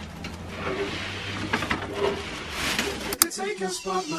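Indistinct rustling and handling noise over a low hum, then background guitar music starts abruptly near the end.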